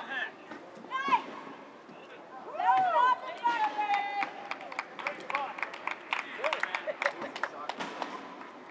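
Players' voices shouting and calling out across an open field, with a long drawn-out shout about three seconds in. In the second half comes a run of quick, sharp clicks.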